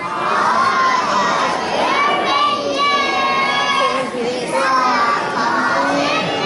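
A group of young children's voices shouting loudly together in long, drawn-out high-pitched calls, three in a row.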